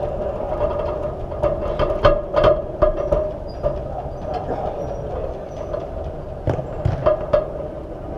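Football being kicked and passed on an indoor artificial-turf pitch: a few sharp thuds, the loudest about two seconds in and again around seven seconds, echoing in the hall over a steady hum.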